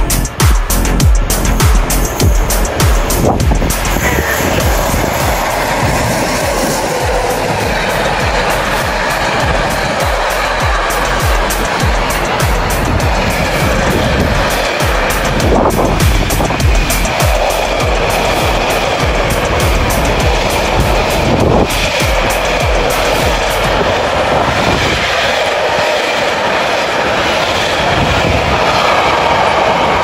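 A long freight train hauled by El 19 and El 16 electric locomotives passes at speed. Wheels on rail and rushing air make a steady noise, loudest and choppiest in the first few seconds.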